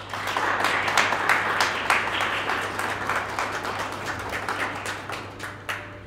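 Audience applauding, starting at once and loudest in the first couple of seconds, then thinning out and stopping just before the end.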